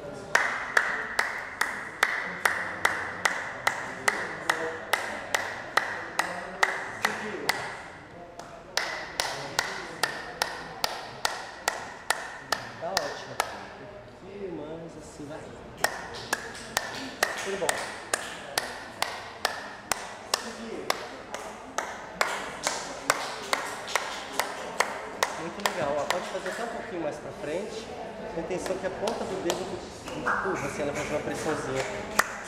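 Body-percussion finger clicks: fingers pressed hard together and let slip, giving sharp clicks repeated about two to three a second in runs, with short breaks about eight and fourteen seconds in.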